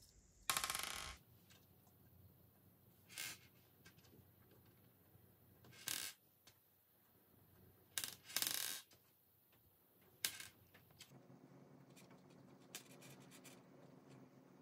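Faux pearl beads clicking and rattling in short bursts as fingers handle them and slide them onto thin wire. There are about six bursts; the longest comes near the start and another just past the middle.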